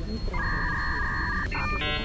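An electronic sound effect: a steady two-note electronic tone for about a second, then a run of short buzzy beeps, over a low background rumble.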